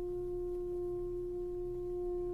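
French horns holding one steady pedal note, the dark sustained opening of an orchestral elegy, over a faint low hum.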